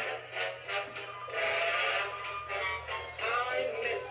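Animated snowman toy playing a holiday song with a sung vocal over music.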